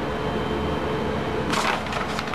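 Paper sheets of a clipboard check-report log crinkling and rustling as they are handled and turned, loudest about one and a half seconds in. Under it runs a steady background hum with a faint held tone.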